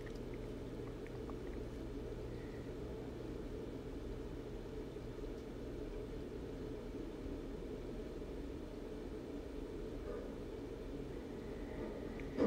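Faint steady low background hum with a few very faint light ticks, as tweezers and a soldering iron work on small wires.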